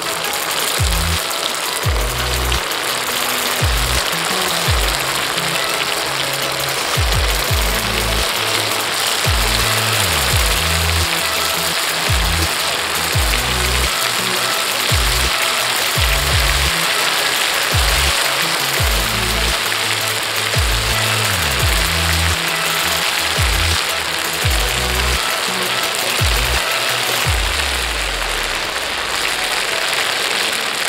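Hot cooking oil sizzling steadily in a steel pan as toothpaste fries and foams in it, over background music with a deep, rhythmic bass line.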